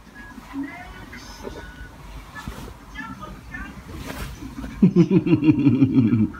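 A quiet room with faint, indistinct sounds, then a person laughing, a short burst of rapid pulses that starts near the end.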